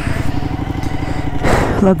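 Motorcycle engine running steadily as the bike rides along, with a brief rush of noise about one and a half seconds in.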